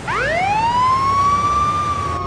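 A siren-like tone from a music track's intro. It sweeps up steeply in the first half-second and then holds nearly steady.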